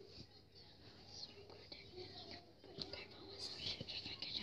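A girl whispering quietly, with a few faint clicks.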